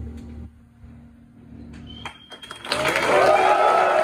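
The band's last low note stops about half a second in, followed by a brief hush with a few small clicks. Then, under three seconds in, the audience breaks into loud applause mixed with shouting voices.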